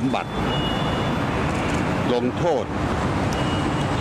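Steady road-traffic noise outdoors, loud and even, under a man's short bursts of speech into reporters' microphones.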